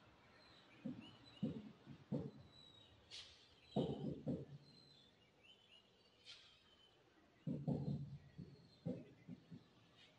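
Marker writing on a whiteboard: a string of short, faint strokes and taps as an equation is written out, coming in small clusters with pauses between them.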